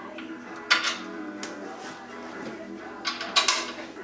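Steel washers clinking as they are fitted onto the upper control arm's shaft studs: a sharp metallic click a little under a second in and another couple near the end. Faint background music plays throughout.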